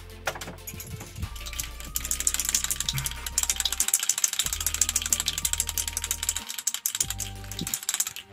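An aerosol spray-paint can being shaken hard, its mixing ball rattling in fast, even clicks that build up about two seconds in and stop just before the end, over background music.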